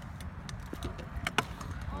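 Stunt scooter rolling through a concrete skatepark bowl: a steady low rumble with several short, sharp clacks, two of them close together a little past the middle.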